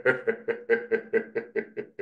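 A person laughing: a long run of quick, even 'ha' pulses, about five a second, growing weaker toward the end.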